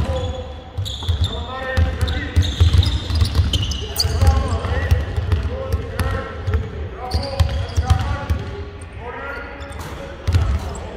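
Basketballs bouncing on a hardwood court in a large gym, with repeated low thumps from dribbling throughout. Players' voices call out indistinctly over them.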